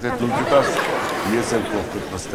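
Many voices talking over one another in a steady murmur of chatter, with no single clear speaker.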